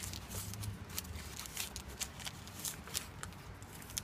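Paper crinkling in short, irregular rustles as a small folded paper packet is unfolded by hand.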